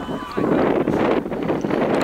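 Wind buffeting the microphone on an open playing field, with faint, distant shouts from footballers on the pitch.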